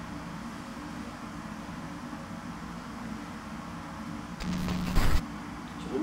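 Steady low hum and hiss of a dark underground room. About four and a half seconds in, a harsh buzzing burst lasting under a second cuts in, the loudest sound here, at the same moment the picture breaks up: a recording glitch.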